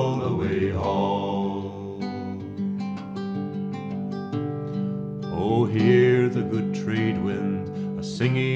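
Classical guitar fingerpicked in an instrumental passage, single plucked notes ringing out one after another. A man's singing voice trails off in the first second or so and comes in again briefly about six seconds in.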